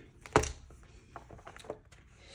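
A hand handling a B6 planner notebook and its leather cover: one sharp tap about a third of a second in, then a couple of faint clicks.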